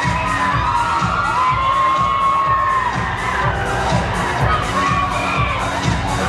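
An audience of young people cheering and screaming over the song's backing track, which keeps a steady drum beat underneath.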